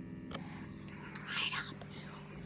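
An electric guitar amplifier giving a steady buzzing hum while the guitar is live but not yet being played. A short whispered word comes about a second and a half in.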